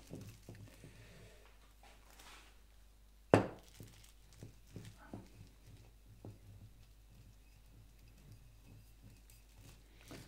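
A plastic bottle rolled and pressed by hand over plastic film on wet paint: faint rubbing and crinkling with scattered light ticks, and one sharp knock a little over three seconds in.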